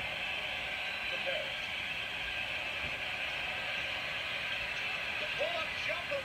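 Basketball arena crowd noise from old game-broadcast audio, a steady roar as the game clock winds down, with a few short pitched sounds near the end.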